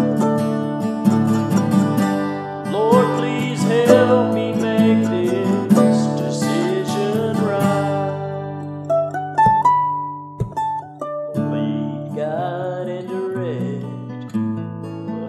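Acoustic guitars strumming the instrumental intro of a slow worship song. Near the middle the strumming drops out for about three seconds while picked single notes climb in steps, then the strummed chords come back.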